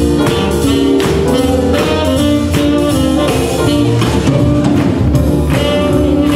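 A small swing band playing a jazzy swing tune with electric guitar and drum kit, keeping a steady beat.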